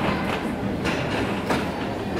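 Steady rumbling background noise in a large indoor arena, with a few irregular soft knocks.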